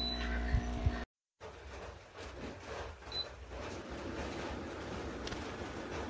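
A Flying pig portable HEPA air purifier running with a steady fan hum while its control panel is handled, with two soft knocks just under a second in. The sound cuts out abruptly about a second in and returns as a steady hiss of air with a low rumble and a few faint handling clicks.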